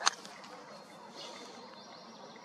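A single short click at the very start, then faint steady background hiss.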